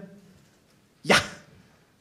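A man's voice giving a single short, sharp "Ja!" into a microphone about a second in.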